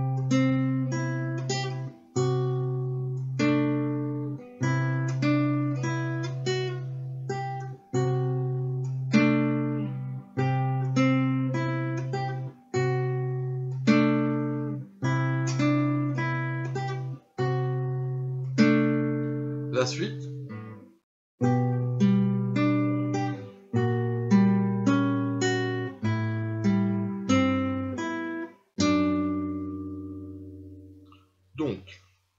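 Nylon-string classical guitar played slowly with the fingers: a low bass note re-struck about once a second, with a broken chord picked above it each time. Near the end the bass steps down to lower notes. It is a four-bar passage played twice over.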